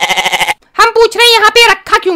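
High-pitched cartoon character's voice talking in two stretches, with a short break just over half a second in. The first stretch quavers rapidly.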